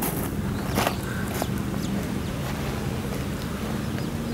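A steady low hum runs throughout, with three short sharp clicks in the first second and a half.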